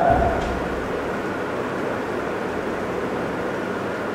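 Pause in a man's speech: a steady background hiss with a low rumble underneath, the voice trailing off at the very start.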